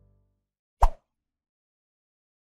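The last of the outro music dies away at the start, then a single short pop sound effect lands about a second in, for the logo animation.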